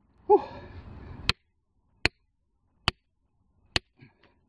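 A heavy "whew" of breath, then a metal digging tool striking the hard pyrrhotite-and-quartz rock of a mineral seam four times, sharp clicks a little under a second apart.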